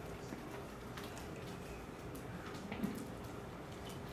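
Quiet room tone: a faint steady hum and background hiss, with one brief faint sound a little before three seconds in.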